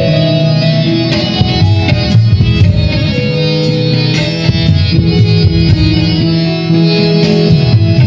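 Live instrumental interlude of a Hindi ghazal-style song: harmonium and electronic keyboard playing a sustained melody over tabla.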